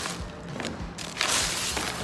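A plastic bag rustling as dry potpourri is handled, with a burst of rustling just over a second in, over background music.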